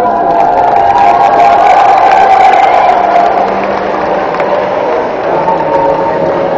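A group of young voices holding one long note together for about three seconds, then a fainter, higher held note near the end.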